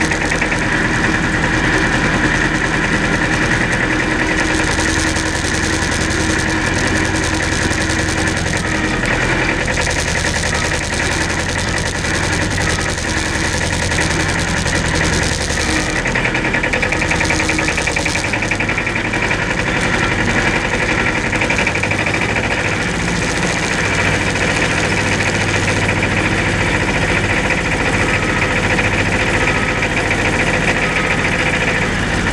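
Tractor engine running steadily, its tone shifting a few times.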